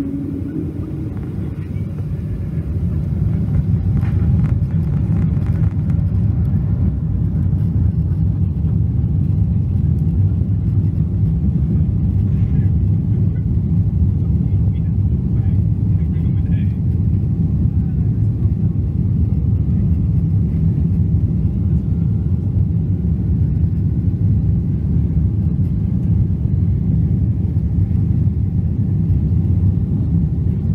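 Boeing 777-200 jet engines heard from inside the cabin, swelling to takeoff power over the first few seconds. After that comes a steady, heavy rumble with a faint rising whine as the aircraft accelerates down the runway.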